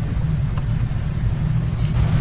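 A steady low rumble of background noise, with no speech.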